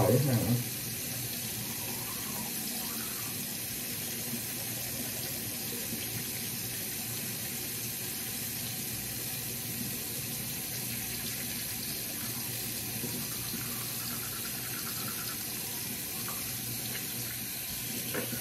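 Bathroom tap running steadily into the sink.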